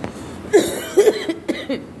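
A woman coughing in a quick run of several coughs, starting about half a second in, the first two the loudest.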